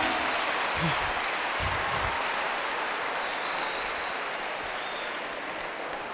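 A large audience clapping, the applause slowly fading away.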